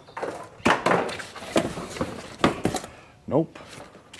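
Several sharp knocks and light clatters, irregularly spaced, with a short vocal sound from a man a little past three seconds in.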